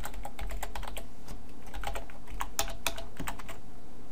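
Computer keyboard typing: an irregular run of key clicks over a low steady hum.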